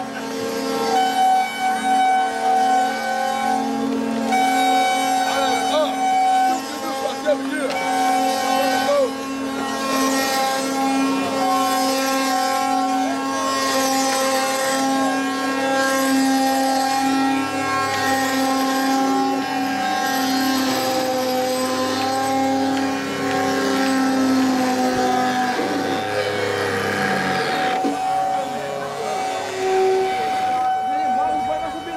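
Wooden axles of ox carts singing as the carts roll: several steady, droning tones at different pitches, held for many seconds and overlapping, from the axles turning against the wooden cart frames. People's voices mix in.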